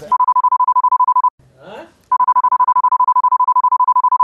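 A broadcast censor bleep: a loud, steady 1 kHz tone sounds for about a second. It is followed by a brief spoken fragment, then a second, longer bleep that runs on past the end.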